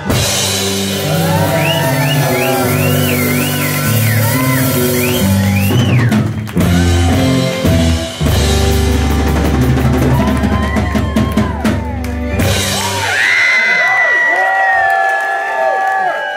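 Live rock band playing: drum kit, bass and guitars under a wavering high melody line, with a heavy held passage partway through and a long held high note near the end.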